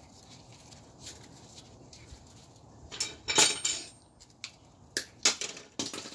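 A few sharp metallic clinks and clatters as tools and wire are handled, the loudest a short cluster about halfway through, then several single clicks near the end.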